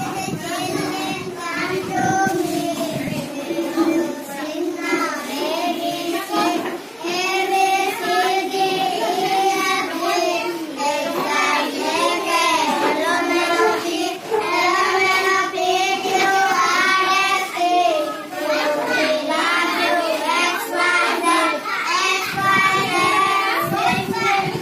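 A small group of young children singing an alphabet rhyme together in unison.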